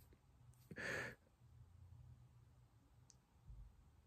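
A man's single short breath, like a sigh, about a second in, in an otherwise near-silent pause. A faint click comes near the end.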